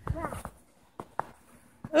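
A brief faint voice, then two short crunches of footsteps in deep snow about a second in.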